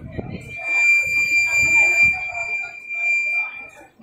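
Public-address microphone feedback: one steady high-pitched squeal held for nearly four seconds, cutting off just before the end, over people talking.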